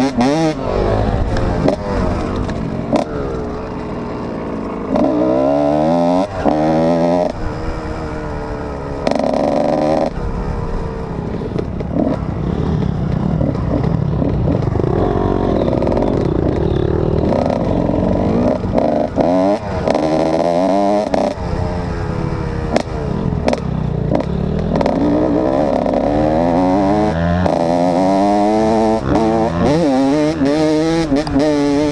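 Kawasaki KX125 two-stroke dirt bike engine ridden hard off-road, revving up and dropping back over and over as the throttle opens and closes, heard close from the rider's helmet.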